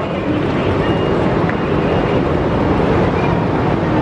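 Steady din of vehicle engines running inside a covered bus terminus, a dense even rumble and hiss with no single event standing out.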